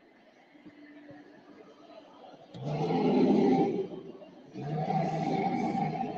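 Werewolf animatronic prop playing its programmed growl through its speaker: two long growls, the first beginning about two and a half seconds in, the second a second later.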